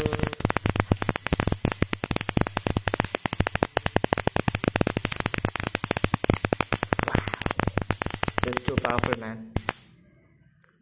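Homemade spark gap Tesla coil running: the spark gap fires in a rapid, irregular crackle of snaps with a steady high-pitched whine over it. It cuts off about nine seconds in, with one more short burst just before the end.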